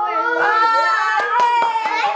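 A person clapping several times in the second half, over a held, voice-like pitched sound.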